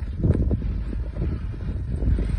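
Wind buffeting a phone's microphone, an uneven low rumble with a few faint ticks.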